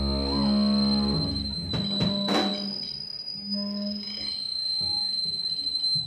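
A held, distorted amplified chord rings and cuts off about a second in, followed by a few loose drum and cymbal hits. Between them the amps hum, with a steady high feedback whine, while the band is not yet playing together.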